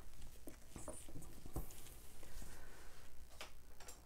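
Quiet handling of small objects on a table: a few faint, irregular clicks and light taps, the sharpest about three and a half seconds in.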